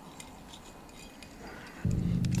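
Faint, light metallic clinks of climbing gear, the cams and carabiners racked on a climber's harness.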